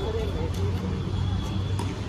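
Indistinct voices of a group of people talking at a distance, over a steady low rumble.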